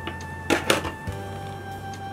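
Background music of steady held notes over a low bass line. Two sharp clicks come about half a second in, louder than the music.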